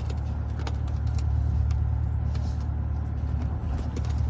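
Car driving, heard from inside the cabin: a steady low rumble of road and engine noise, with a few faint, irregular clicks.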